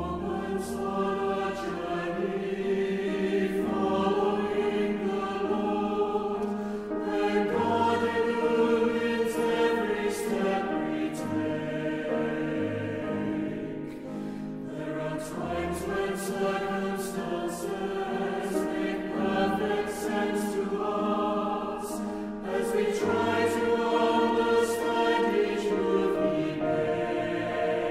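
A choir singing a slow Christian worship song with instrumental accompaniment and a low bass line; the lyrics include "There are moments on our journey following the Lord" and "When God illumines every step we take".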